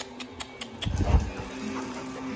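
Dogs moving about on a hard floor: scattered light clicks and a low thump about a second in, over a faint steady hum.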